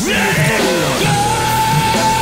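Live heavy rock band playing: electric guitars, bass and drums with a yelled vocal. A long, steady high note comes in about a second in and is held.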